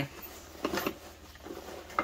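Soft rustling and handling of a fabric backpack and its webbing straps as hands work the frame into the pack, in a few light scattered scuffs.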